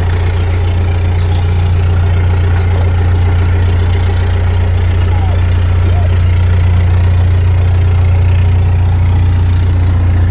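Narrowboat engine idling steadily with a deep, even hum.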